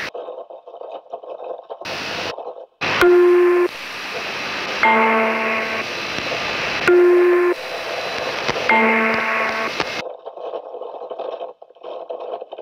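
Shortwave numbers-station broadcast between spoken number groups: radio hiss and crackle, then an electronic tone signal. The signal is a short single tone followed by a longer chord of several tones, and the pair sounds twice.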